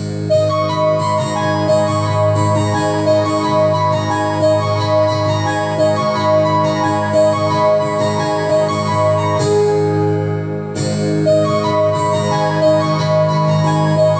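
Digital piano set to a layered harpsichord and piano-string voice, playing repeated chords and a melodic line in E major / A-flat minor. About ten seconds in the upper notes briefly drop out before the playing resumes in full.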